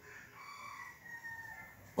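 A faint animal call in the background, drawn out for about a second and a half and sliding slowly down in pitch.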